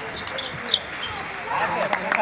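Table tennis ball striking rackets and table in a doubles rally: a few sharp clicks. From about a second and a half in, shouting voices as the point ends.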